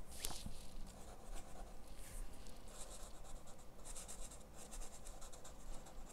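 Broad chisel tip of an ArtX alcohol marker dabbing and stroking on sketchbook paper, a faint scratching of felt on paper in several short strokes as small flower petals are laid down.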